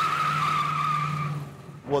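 Tires of a 1956 Studebaker Hawk squealing on a parking-garage floor. One long, slightly wavering squeal that fades out about one and a half seconds in.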